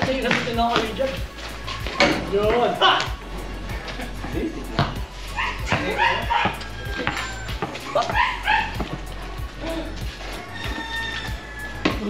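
Players' voices calling out during a pickup basketball game, with repeated thuds of a basketball bouncing on a concrete court.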